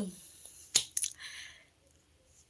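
The end of a spoken "oh", then three sharp clicks, one about three-quarters of a second in and two close together about a second in, followed by a brief breathy hiss.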